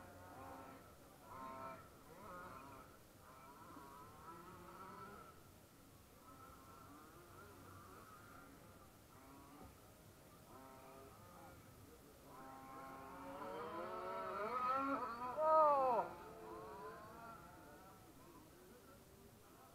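Radio-controlled cars running on a dirt track, their motors whining faintly and changing pitch as they speed up and slow down. From about a second past the midpoint the whine grows louder, rises in pitch and then drops sharply, loudest at about three quarters of the way through as a car passes close.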